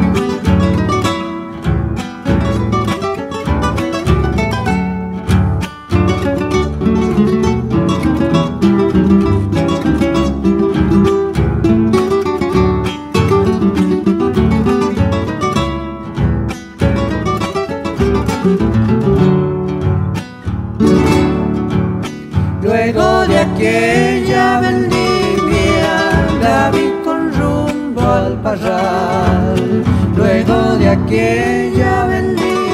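Cuyo folk ensemble of acoustic guitars and guitarrón playing a cueca with fast rhythmic strumming; voices come in singing about two-thirds of the way through.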